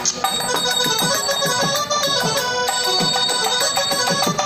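Live stage-drama accompaniment: a keyboard plays a melody of held notes over repeated hand-drum strokes that drop in pitch, a few to the second.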